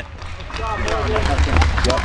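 Faint talking in the background over a steady low rumble, after the louder voice stops at the start.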